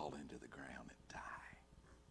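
A man's voice speaking very softly, close to a whisper, in a few short breathy phrases.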